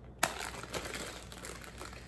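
Plastic bag of blueberries crinkling as it is handled and opened, with a sharp click about a quarter second in and faint scattered ticks after.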